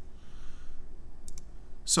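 Computer mouse clicking: one click at the start, then two quick clicks about a second and a half later.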